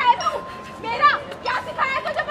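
Raised, high-pitched voices of young women speaking or calling out in quick, overlapping bursts, with a faint steady high tone behind them.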